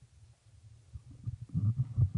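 Handling noise from a handheld interview microphone being passed from one person's hand to another's: a quiet first second, then a run of low, irregular bumps and rubbing in the second half.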